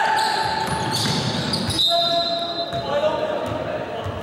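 Basketball game play on a gym's hardwood court: the ball bouncing, sneakers squeaking and players' voices, all echoing in the hall.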